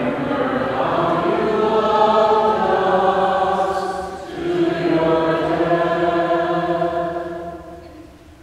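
A group of voices singing a slow, chant-like hymn without instruments, in two long held phrases, the second fading out near the end.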